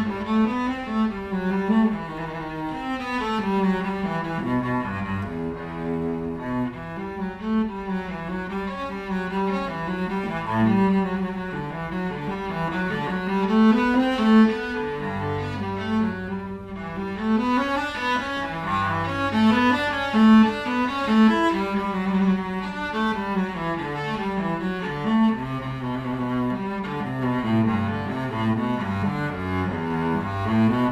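Solo cello, an Anton Krutz Signature cello, bowed in a flowing run of quick notes, with a few longer low notes held along the way.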